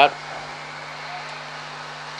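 A steady low hum with faint hiss, unchanging throughout, with no distinct knock or bang.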